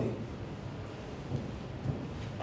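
Steady low room rumble and hiss, with a couple of faint soft sounds as a marker writes on flip-chart paper.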